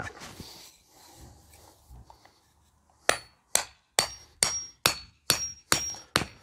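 A hammer pounding a pointed wooden garden stake into lawn soil: after a quiet start, about seven sharp strikes roughly two a second, beginning about three seconds in, each with a short metallic ring.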